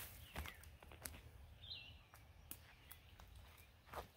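Near silence: a few faint, soft clicks and rustles as a mushroom is snipped off at ground level with scissors, and one faint bird chirp a little under two seconds in.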